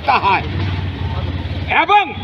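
A motor vehicle's engine running close by, a steady low rumble that fills the gap between a man's words and fades as his voice returns near the end.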